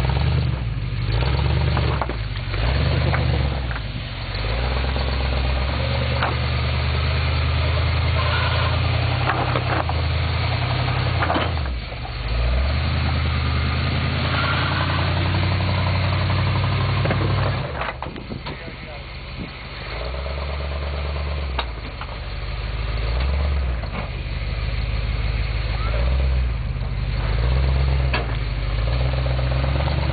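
Pickup truck engine running at low revs while crawling over boulders, its pitch stepping up and down with the throttle. Several sharp knocks of tyres and chassis on rock.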